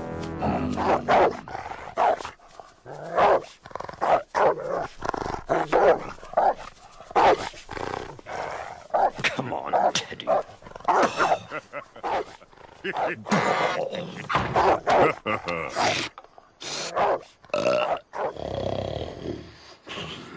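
Cartoon dog barking and growling in many short bursts, mixed with wordless character grunts and mumbles over background music.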